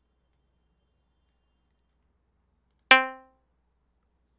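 Synthesized plucked-string tone from Audacity's Pluck generator: a single note at middle C, plucked once about three seconds in and dying away within half a second.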